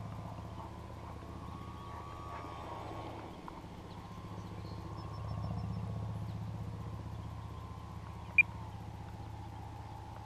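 Distant RC model airplane motor and propeller giving a thin steady whine over a low rumble, its pitch dropping about 8.5 seconds in as the throttle comes back for landing. A single short sharp click near the end.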